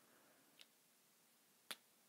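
Near silence, broken by one short sharp tick about one and a half seconds in and a much fainter one before it: a marker tip tapping against a whiteboard while writing.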